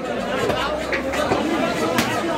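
Several people talking over one another, with a few knocks of a butcher's cleaver chopping meat on a wooden log block.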